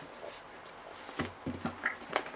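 Handling noise close to the microphone as a camera is being set up: a few soft knocks and rustles about a second in, and a short high squeak near the end.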